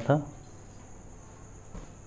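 Low steady background carrying a thin, steady high-pitched whine, with a faint click near the end and a last spoken word at the very start.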